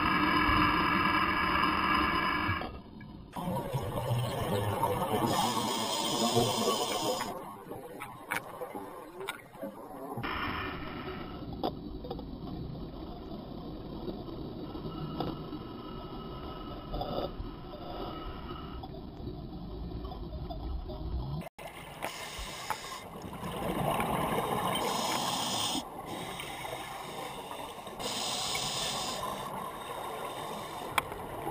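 Scuba breathing heard underwater: surges of exhaled bubbles from a regulator every several seconds, each lasting a few seconds, muffled through the camera's housing, with a steady humming tone in the first few seconds.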